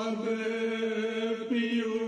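A single voice chanting Urdu verse in long, steadily held notes, with a brief rise in pitch about one and a half seconds in.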